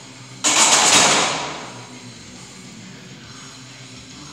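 Loaded barbell racked into the metal uprights of a bench press: one sudden loud clank with a rattle of the plates that dies away over about a second. Background music with guitar plays underneath.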